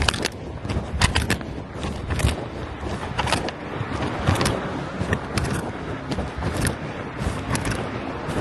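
Handling noise from a covered or pocketed recording device: continuous rustling, with irregular knocks and scrapes about one or two a second against the microphone.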